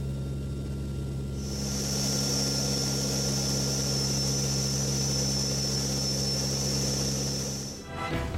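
Steady roar of a military turboprop transport plane in flight, loud enough to drown out conversation in the cabin: a set of low, even propeller hums, with a rushing hiss that joins about one and a half seconds in. It cuts off just before the end.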